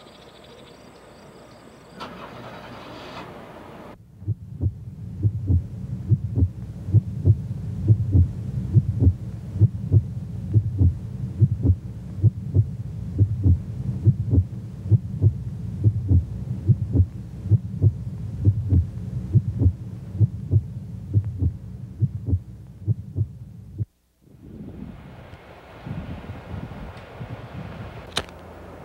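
Crickets chirping briefly, then a low, even throbbing pulse of about two beats a second, like a heartbeat effect on a film soundtrack, which cuts off abruptly near the end and gives way to a soft hiss.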